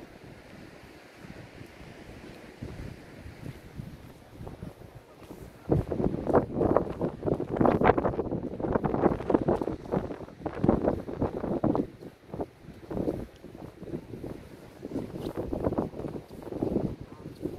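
Wind buffeting the microphone. It is light at first, then strong, irregular gusts come in about six seconds in and last several seconds, easing to weaker intermittent gusts near the end.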